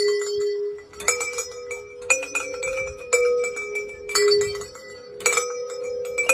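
A bell-like metallic chime struck about once a second, each clear ringing note sustaining until the next strike.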